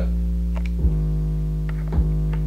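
Playback of a self-produced beat through studio monitors: sustained synth chords over a deep, steady 808 bass, the notes changing together a little under a second in, with a few faint ticks.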